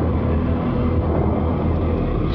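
Steady low rumble of racing car engines.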